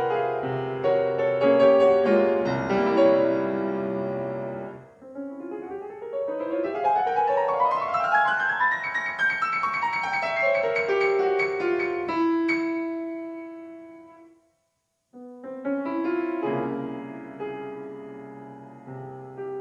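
Solo classical piano on a concert grand: dense chords and passagework, a rising run of notes in the middle, then a held chord dying away to a brief silence about three-quarters through before the playing starts again.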